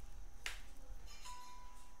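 A single sharp click, then a little over a second in a steady one-pitch electronic beep lasting under a second.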